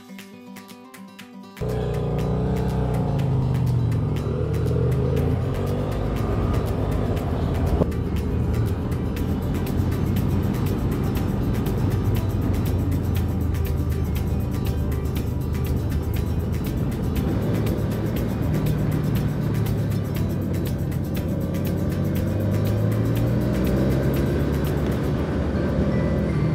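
Music at first. About a second and a half in, the loud run of a BMW F800R's parallel-twin engine comes in, heard from the bike as it is ridden, its revs rising and falling, with wind noise. Music goes on underneath.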